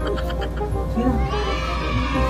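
A shaky, rapidly trilling call, like a horse's whinny, fading out within the first second, over steady background music.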